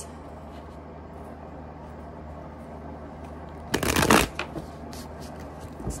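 A deck of tarot cards being shuffled by hand: one short, dense burst of shuffling about four seconds in, followed by a few faint card clicks, over a steady low hum.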